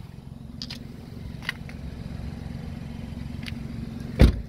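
Car engine idling with a steady low hum, with a few faint light ticks.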